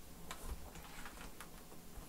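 A few faint, scattered clicks and taps of a laptop chassis being handled and turned.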